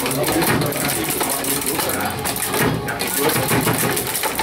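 Table football being played: the ball and the rod-mounted players clicking and knocking, with the rods rattling, over the chatter of people talking in the room.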